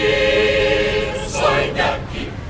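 Mixed choir singing a cappella. It holds one sustained chord for the first second or so, then moves into shorter sung syllables near the end.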